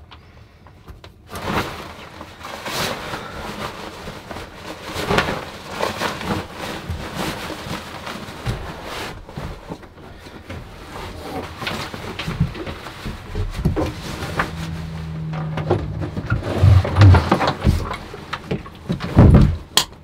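Rustling and irregular knocks of boots, clothing and camping gear being handled and packed up, with a few louder thumps near the end.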